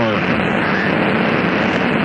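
Roar of the Space Shuttle launch just after liftoff, a steady rushing noise with no distinct tones, heard thin through a radio broadcast.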